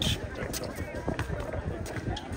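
Basketball players' footsteps as they run on a hard court, with players' voices calling out.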